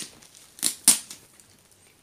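Two quick, crisp strokes close together, about two-thirds of a second in, as the packing tape securing a rolled, foam-cored canvas is cut and pulled away.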